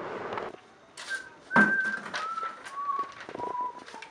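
Someone whistling a slow falling tune: clear, held notes, each a step lower than the last, starting about a second in. A short knock comes about one and a half seconds in.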